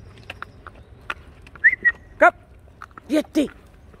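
A dog being walked gives a few short yips: a brief high note about halfway through, then short pitched calls near the end, with small clicks in between.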